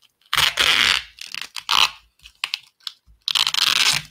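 Plastic wrapping on a comic being pulled and handled, crinkling and tearing in three loud rustling bursts.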